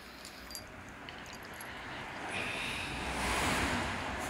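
A road vehicle passing by, its noise swelling through the second half and loudest near the end. A few faint jingles of a small collar bell come in the first second.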